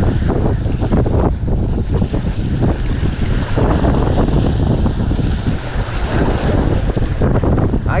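Wind buffeting the microphone in a steady, rumbling rush, over waves washing and breaking against the jetty rocks.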